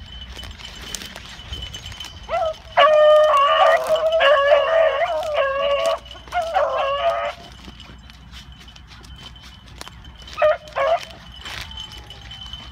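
Beagles baying on a rabbit's trail: a short rising yelp, then a long drawn-out bawl lasting about three seconds, a second shorter bawl right after it, and two short barks near the end.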